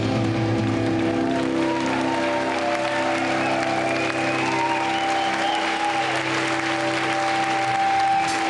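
Audience applauding while the band's electric guitars and bass hold sustained, ringing notes as a live rock song ends.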